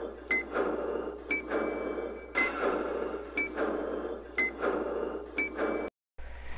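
Rhythmic produced sound-effect bed for a TV station ident: about once a second a short high ding, each followed by a rattling mechanical clatter. It cuts off suddenly just before the end.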